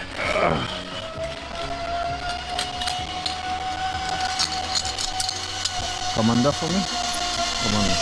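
Zipline trolley pulleys running along the steel cable, a long steady whine that rises slightly in pitch and then falls away.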